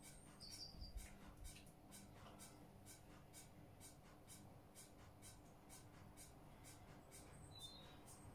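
Near silence: faint, even ticking about twice a second, with two short high chirps, one about half a second in and one near the end.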